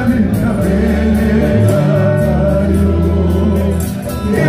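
Live gospel praise music: a group of singers over bass guitar, guitars and drums.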